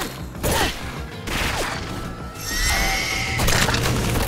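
Trailer music under cartoon fight sound effects: a few sudden hits and whooshes as blows land.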